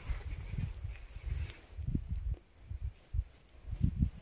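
Faint, irregular low thuds and rustling from handwork in loose garden soil while weeds are pulled out.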